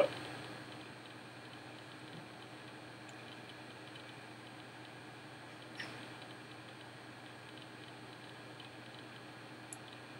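Quiet room tone with a faint steady hum, and a single soft click a little past the middle as fingers fit a small cable clamp onto the bow's cables.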